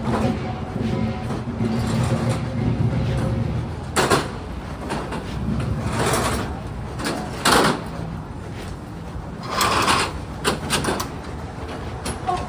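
Street ambience on a rain-wet city sidewalk: a low traffic rumble, with several short, loud, noisy bursts about four, six, seven and a half and ten seconds in.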